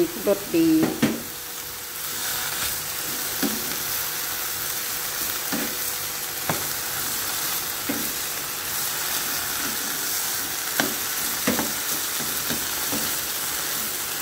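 Minced pork, banana peppers and baby corn sizzling in a stir-fry pan, with a steady hiss that picks up about two seconds in. A wooden spatula stirs the food, its strokes scraping and knocking against the pan every second or so.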